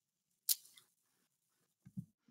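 One sharp click about half a second in, made at the computer as a search term is being entered; otherwise near silence, with a faint low thump at the very end.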